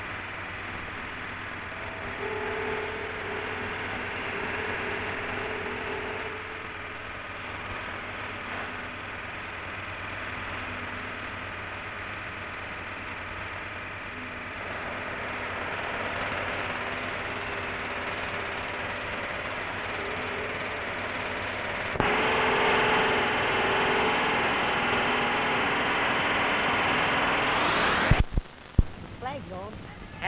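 Steady hiss of an old optical film soundtrack, with faint indistinct background sounds under it. The hiss gets louder about two-thirds of the way in. Near the end a rising whine climbs and cuts off suddenly, followed by a few thumps.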